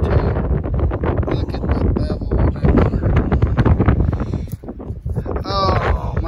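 Wind buffeting the microphone as a loud low rumble, with a short voice near the end.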